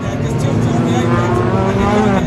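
A pack of circuit racing cars running together round a bend, several engine notes layered into one loud, steady sound.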